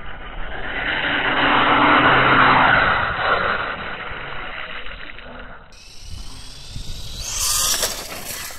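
Brushless-powered Vaterra Halix RC monster truck driving through a puddle, its tyres throwing up water with a loud hissing splash. The splash swells over the first few seconds, eases, then comes again louder near the end as the motor whine rises.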